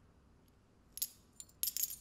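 Light metallic clinks and jingles of small metal parts being handled while a bundle of dynamite sticks is assembled, in short quick clusters starting about a second in.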